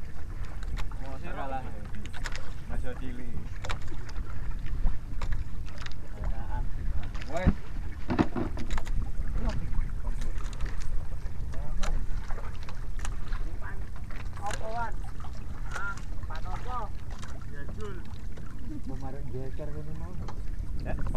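Steady low rumble of wind and sea on a small outrigger fishing boat at sea, with voices calling out now and then and scattered knocks.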